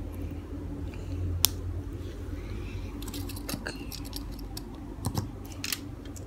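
Small plastic Lego pieces clicking and tapping as they are handled and pressed onto a minifigure, in scattered single clicks with one sharp click about a second and a half in and several more in the second half.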